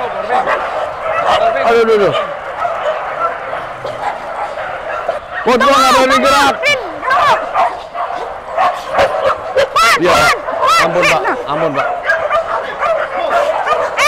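A large pack of dogs barking, yipping and whining at once, with a run of short sharp barks in the second half.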